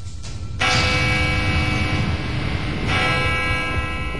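A church bell tolling: one stroke about half a second in and another near three seconds, each ringing on over a low rumble.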